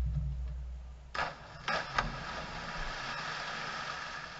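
Swimmers diving into the pool: a low rumble during the first second, then sharp splashes about a second in and again just before two seconds as bodies hit the water, followed by steady churning and splashing of the water.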